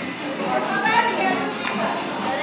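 A group of women talking over one another, lively overlapping voices, with a brief sharp click near the end.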